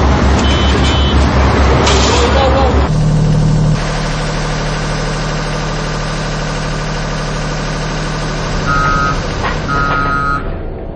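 Road-rail vehicle engines running on a track work site, with short reversing-alarm beeps. About three seconds in the sound changes to a steadier, quieter hum, and two short double beeps come near the end.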